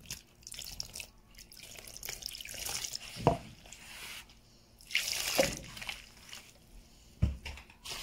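A bare hand mixing wet baghrir batter in a bowl: squelching and sloshing of liquid worked into flour, with three dull slaps of the hand into the batter about two seconds apart.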